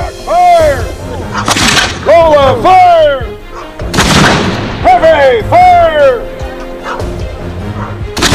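Music with a repeating sung or melodic phrase, over which small cannons fire: two booms, about 1.5 s and 4 s in.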